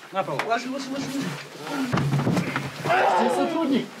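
Indistinct, strained shouting from several people at once during a scuffle as people are held down, voices overlapping with no clear words, louder in the second half.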